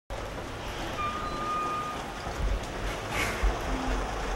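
Outdoor marina ambience: a steady wash of noise with uneven low rumble from wind on the microphone, and a single steady high whistle-like tone lasting about a second, starting about a second in.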